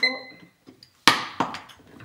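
A digital timer gives a short beep as it is started, then about a second later a sharp, loud plastic click as the cap is pressed onto a film developing tank, followed by a smaller knock.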